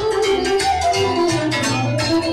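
Loud live lăutari party music played through the hall's speakers: a band with a steady beat and a melody over it.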